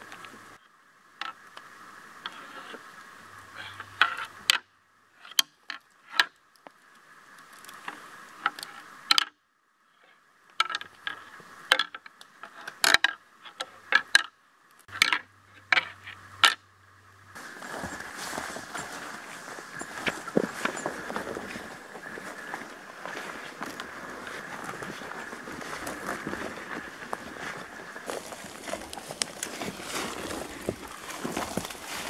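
Shed deer antlers struck and ground together in irregular sharp clacks, rattled to imitate sparring bucks and call one in. A little past halfway the clacking gives way to steady rustling and footsteps through brush and leaf litter.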